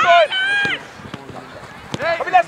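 A shouted call from a player or coach on a football pitch, high-pitched and drawn out, in the first second. After it comes quieter open-air field noise with a couple of short knocks.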